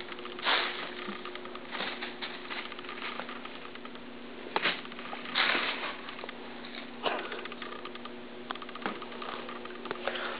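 A cat scratching and rustling as it plays: scattered short scrapes and soft taps, with the biggest about half a second in and again around five seconds in.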